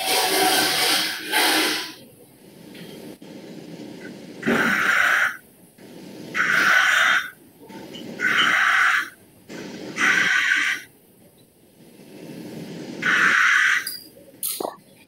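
Repeated bursts of breath-like hissing noise coming through a video-call participant's open microphone, about six in a row, each lasting under a second to nearly two seconds, with quieter gaps between them.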